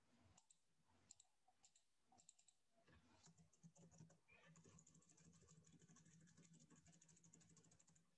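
Near silence with faint, scattered clicks from a computer mouse and keyboard, growing quicker after about the middle.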